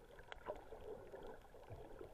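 Faint, muffled underwater ambience heard through an action camera's waterproof housing, with scattered sharp clicks.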